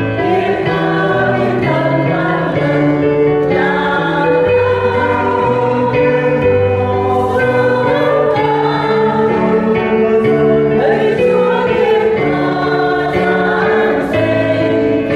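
A choir singing a Christian hymn in long held notes over a steady bass accompaniment.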